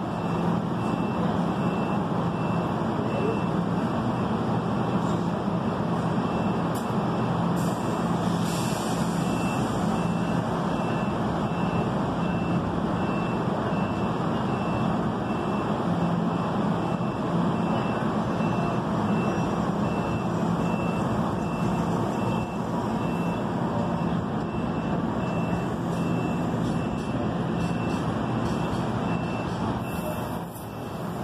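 NJ Transit multilevel push-pull train with an ALP-46 electric locomotive at the platform: a steady hum and whir with a low drone, and a faint high beep repeating at regular short intervals.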